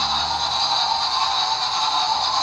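Background music laid over the footage, a steady, even sound without clear beats.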